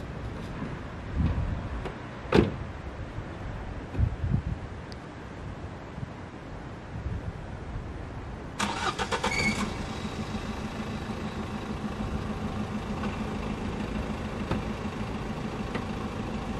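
A car door shuts with a sharp knock about two seconds in, with a few duller thumps around it. About eight and a half seconds in, the small hatchback's engine is started with a short crank and settles into a steady idle.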